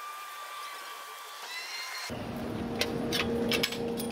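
Outdoor back-yard ambience: faint thin high tones at first, then from about halfway a steady low hum. A few sharp clicks and knocks come near the end as people walk through a chain-link gate carrying a toolbox.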